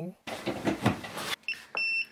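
Bayite BTC201 digital thermostat controller beeping its alarm on being plugged in: high, single-pitched beeps, a short one about a second and a half in and then a longer one. The alarm signals error mode because the temperature sensor probe is not plugged in.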